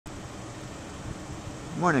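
Steady background hiss and low rumble of open-air ambience. Near the end a man's voice says "Good morning."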